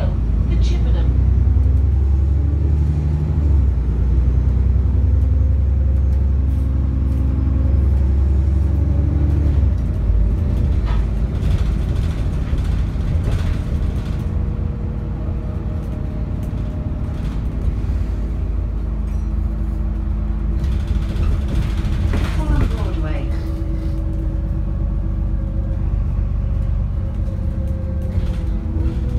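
Interior sound of an ADL Enviro 400 diesel double-decker bus on the move, heard from the passenger saloon: engine and driveline drone with a heavy low rumble that eases about ten seconds in, then a lighter, steadier running sound with slowly gliding tones.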